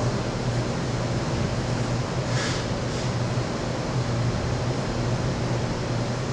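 Steady low hum and hiss of room tone, with two brief soft hissing sounds about two and a half and three seconds in.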